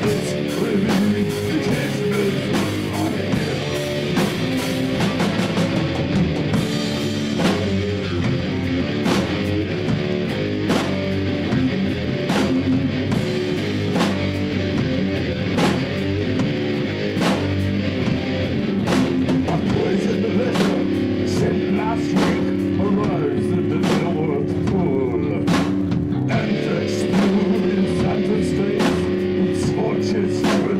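A rock band playing live: electric bass, electric guitar and drum kit together, with steady drum hits over the guitar chords. From about two-thirds of the way through, a held chord rings under the drums.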